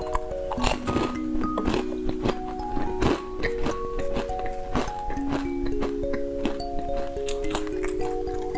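Background music, a simple melody of held notes, plays throughout, with close-miked eating sounds on top: short sharp mouth clicks and bites every second or so as candy and a strip of jelly are chewed.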